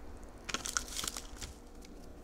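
Shredded raw cabbage dropped by hand onto dry nori sheets: a short run of crisp crackles and rustles, starting about half a second in and dying away about a second later.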